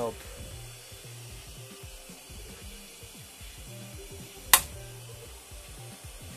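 Plastic 3D-printed part being worked loose from a printer's glass bed by hand, with one sharp crack about four and a half seconds in as a small post snaps off the print. Quiet background music runs underneath.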